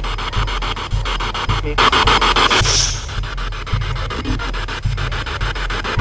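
Dark background music with a steady, evenly pulsing low beat. A breathy rushing noise rises over it for about a second, roughly two seconds in.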